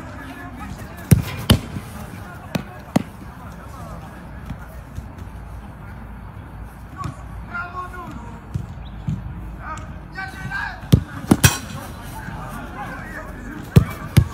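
Football being kicked and stopped on a grass pitch: sharp single thuds, in pairs about a second in and near three seconds, and a cluster around eleven seconds.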